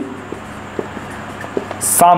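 Marker writing on a whiteboard: a few light taps and strokes over steady room hiss, with a short sharp hiss near the end.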